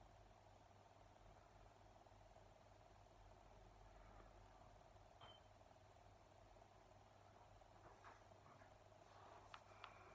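Near silence: faint room tone with a low steady hum, and two or three faint ticks near the end.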